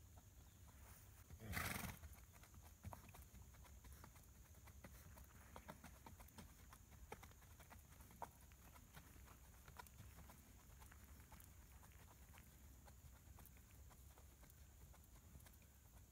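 Faint, irregular hoofbeats of an Icelandic mare walking on the dirt footing of an arena. About a second and a half in, one loud half-second snort from the horse.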